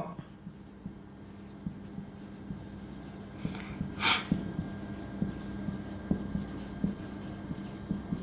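Marker pen scratching and squeaking on a whiteboard as words are written, in small faint strokes. There is one short breath about four seconds in.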